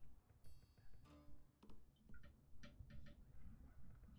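Faint slot-game sound effects: a short chime-like ring about half a second in, then a string of light clicks and taps as the reels come to rest and wild symbols land.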